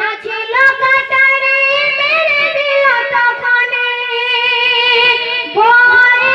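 A woman singing a Bengali Islamic gojol into a microphone, in long drawn-out notes with sliding ornaments: one note is held for a couple of seconds in the middle, and a new phrase begins near the end.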